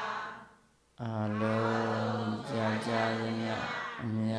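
A Buddhist monk chanting in Pali in a low voice held on one nearly level note. A phrase fades out, there is about a second of near silence, then a new phrase begins about a second in, with short breaks near the end.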